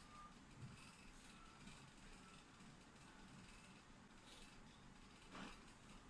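Near silence: room tone, with a faint soft knock about half a second in and another near the end.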